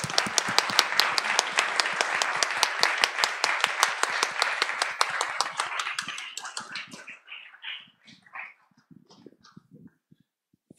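Audience applauding, many hands clapping steadily. It dies away about seven seconds in, leaving a few scattered faint sounds.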